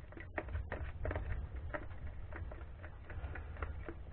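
Metal stirrer scraping and tapping against the sides of a plastic bucket while mixing thick acrylic primer, in short irregular clicks several times a second.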